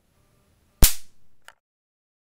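A homemade coil gun firing: a single sharp crack as a camera-flash capacitor bank is dumped through the wire coil by touching steel-rod electrodes, fading quickly. A smaller click follows about half a second later.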